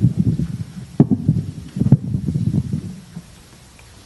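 Handheld microphone being handled: low rubbing rumble with two sharper knocks, about a second and two seconds in, that dies away before the end.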